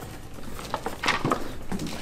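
A few light knocks and clicks from the plastic housing of an upright floor scrubber as it is handled and tipped over onto its back, most of them in the second second.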